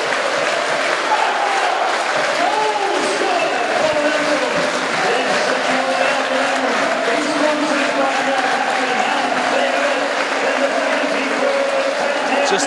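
Football crowd cheering and singing in celebration of a goal: a loud, steady roar of many voices with a chant carried through it.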